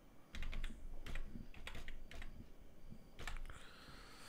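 Typing on a computer keyboard: a few short runs of keystrokes spread over about three seconds.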